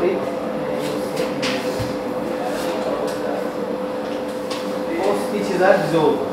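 A man speaking quietly in accented English while treating a patient, over a steady hum.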